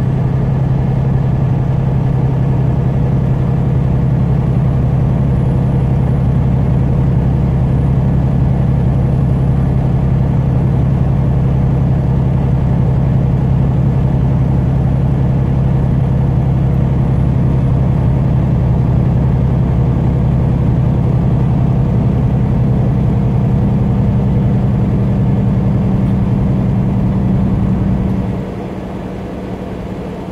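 Steady engine drone and road noise heard inside a vehicle's cab at highway speed. Near the end the drone suddenly drops in level.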